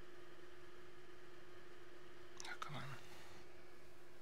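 Quiet room tone with a steady low hum, and a brief, quiet murmur of a voice about two and a half seconds in.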